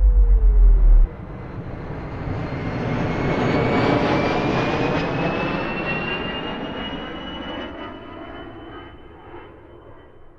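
Deep bass and gliding synth tones cut off about a second in, and an aircraft flying over takes over: a rush of engine noise with a faint rising whine that swells to a peak mid-way, then fades away.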